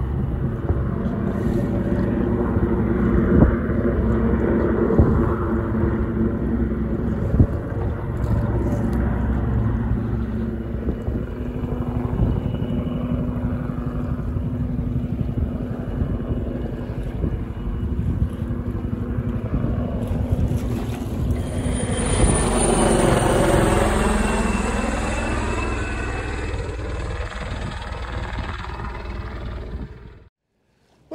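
Helicopters flying low overhead, with rotor and turbine engine noise. One passes close about 22 s in, its high whine falling in pitch as it goes by, and there is wind noise on the microphone throughout.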